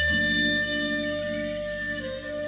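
Recorded song played back through DIY Scan-Speak Revelator/Illuminator bookshelf speakers driven by a Marantz 2270 receiver. This is an instrumental moment between sung lines: a chord struck right at the start and held steady, with bass underneath.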